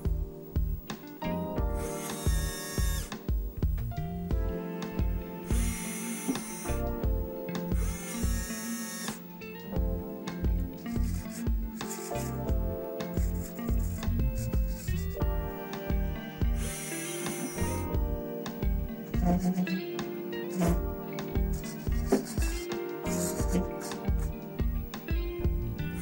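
Several short whirring bursts, each about a second long, from the small electric motors of an RC Unimog's plow: the servo swinging the 3D-printed blade from side to side and the winch raising it. Background music with a steady beat runs under it.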